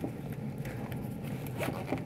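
Faint, scattered scraping and rustling of equipment and cables being handled, over a low steady room hum.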